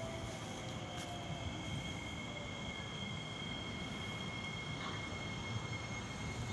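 Elevated metro train at a station: a steady low rumble with two thin, high, steady whining tones held throughout. A lower whine slides down in pitch and fades out about half a second in.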